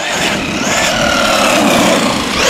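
Traxxas Ford Raptor R RC truck running on pavement: its electric motor and gears whine, with tyre noise, the whine falling slowly in pitch as the truck eases off.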